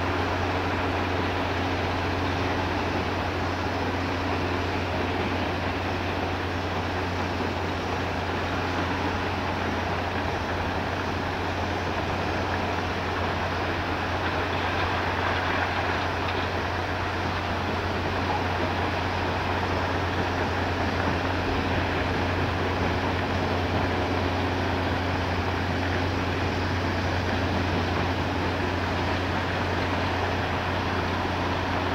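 Dolomite quarry crushing and screening plant running: a steady, unbroken machinery drone with a deep hum underneath.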